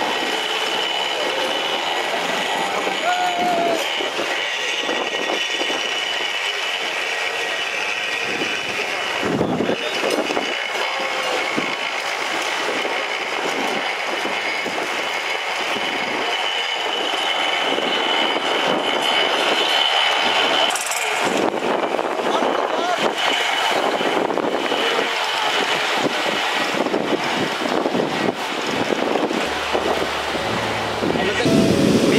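Tractor engine running steadily as it tows a fishing boat up the beach on a rope, with men's voices and breaking surf mixed in.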